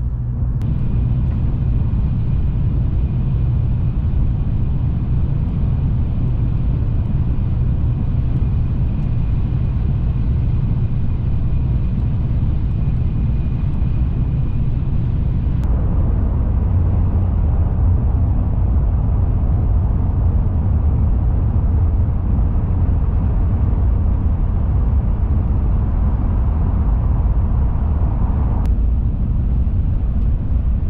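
Low, steady running rumble of an N700-series Shinkansen bullet train, heard from inside the passenger cabin, with a faint high steady tone over it for the first half. The sound shifts abruptly about halfway through, and again near the end.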